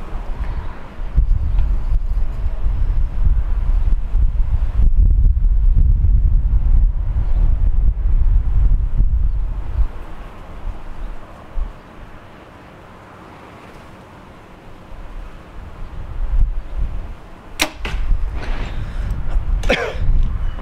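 A single compound bow shot: the string's release and the arrow's strike on the target come as one sharp crack late on. Before it, a low wind rumble buffets the microphone for the first half, then it goes quieter.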